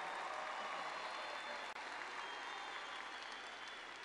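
Large audience applauding steadily, the clapping easing off a little near the end.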